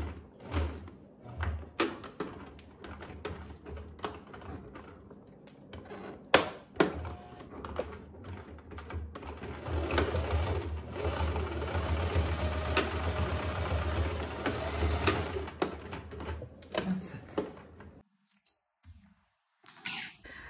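Domestic electric sewing machine stitching through layers of coat fabric: a few short stop-start bursts at first, then one steady run of about six seconds that stops about two-thirds of the way through.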